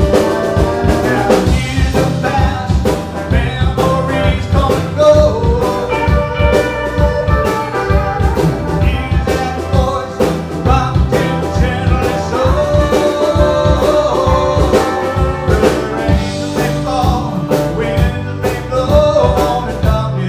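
Live blues-rock band playing an instrumental passage, a bowed violin carrying the lead over acoustic and electric guitars, electric bass, keyboard and a drum kit.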